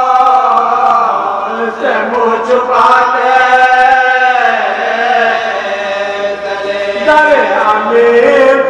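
Male voices chanting a marsiya (Urdu elegy of mourning): a lead voice sings into a microphone with other men joining in, in long held lines that bend in pitch, with short breaks between phrases.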